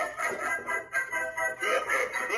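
Clown animatronic playing its soundtrack: music with a warped, synthetic-sounding singing voice.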